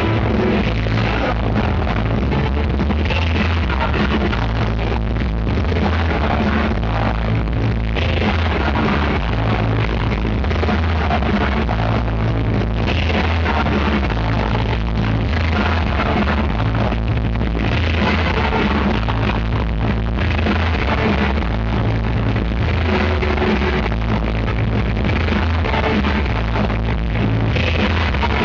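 Rock band playing live, loud: electric guitars over a heavy bass line that steps from note to note.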